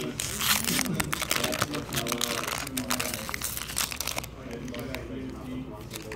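Foil booster-pack wrapper crinkling as a torn Pokémon card pack is opened and the cards are slid out, thick for the first few seconds and then sparser.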